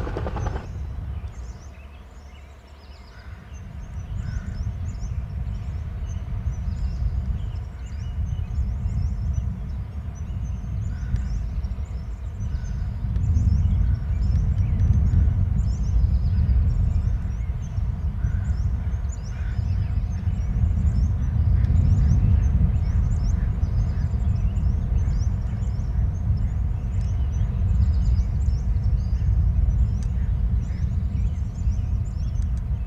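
Low, fluctuating rumble like wind buffeting an outdoor microphone, swelling a few seconds in, with many faint, short high chirps scattered throughout.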